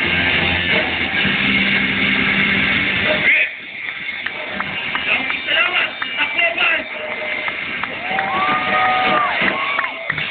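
A live rock band with drums and electric guitar plays loudly and stops abruptly about three seconds in, at the end of the song. Crowd voices follow, with a drawn-out call near the end.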